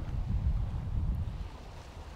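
Low, uneven rumble of wind buffeting the microphone, fading slightly near the end.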